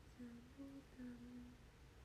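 A young woman humming softly: three short notes, low, higher, then a longer low one.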